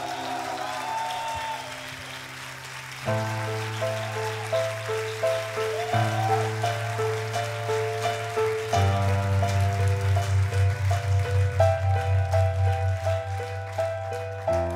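Instrumental passage of live band music: a piano plays a repeating figure of short notes over held low bass notes that change every few seconds. From about nine seconds in, the bass pulses in a fast, even rhythm.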